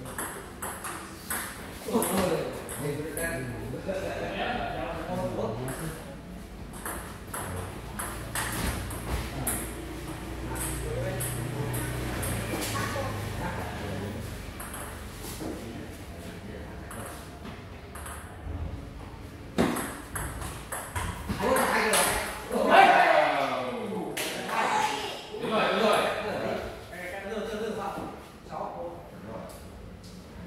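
Table tennis ball clicking off paddles and the table during doubles rallies, a string of sharp light knocks. People's voices run through it and are loudest in the last several seconds.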